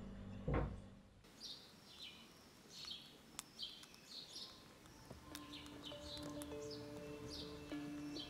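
Pet budgerigar chirping faintly in short high chirps, about two a second. Soft held music notes come in about five seconds in.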